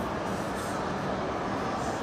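Steady crowd hubbub echoing through a large indoor mall atrium, with no single voice or beat standing out.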